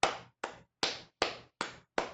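One person clapping hands at a steady pace: about five sharp claps, a little over two a second, each fading quickly.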